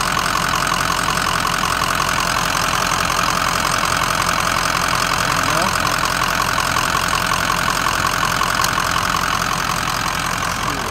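Ford 6.0 Power Stroke V8 turbo diesel idling steadily, with an even, fast diesel clatter, heard up close in the open engine bay.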